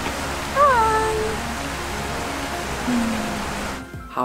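Australian Shepherd puppy giving a high whine that falls in pitch, about half a second in.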